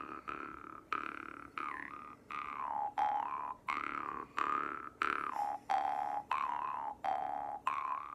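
Jaw harp plucked in a steady rhythm, about one and a half twangs a second. Each twang rings on as a buzzing drone, with a whistly overtone that bends up and down as the player's mouth shape changes.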